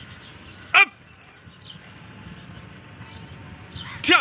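A single short shouted drill call, falling steeply in pitch, about a second in: the pull-up cadence command ("chin" or "up"). The rest is low, steady outdoor background noise.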